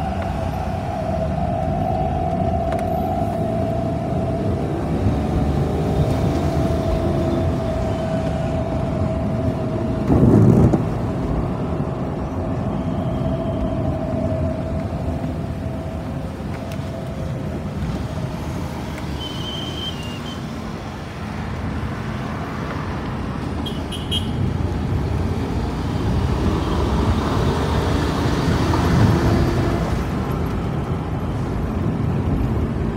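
Steady road and traffic noise heard from a moving vehicle: a continuous low rumble with a held hum for about the first half, a brief loud rush about ten seconds in, and a few short high chirps in the second half.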